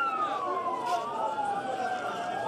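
Sirens wailing, several tones sliding slowly down in pitch and back up, over crowd voices.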